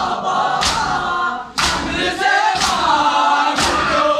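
A group of men chanting a nauha (Shia lament) in chorus, with loud chest-beating (matam) struck in unison about once a second.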